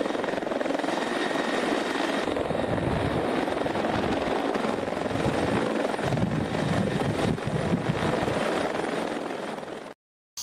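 Light helicopter, a Eurocopter EC120 Colibri, hovering and setting down on a helipad with its rotor running steadily. The sound fades away in the last second.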